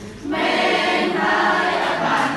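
A group of voices singing a Khmer children's song together, the singing picking up again about a quarter second in.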